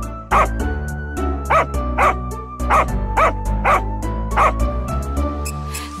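Cheerful children's music with a dog barking in pairs, two short barks about every second and a quarter in time with the beat.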